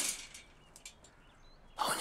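Near silence: quiet room tone with a few faint clicks, then a man's voice speaking near the end.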